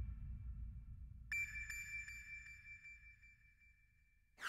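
Quiet break in a synthesized electronic soundtrack: a low drone fades away, and about a second in a single high electronic ping sounds with a couple of fainter echoes, ringing down to nothing near the end.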